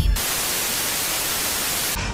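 A steady burst of white-noise static hiss that starts suddenly and cuts off abruptly.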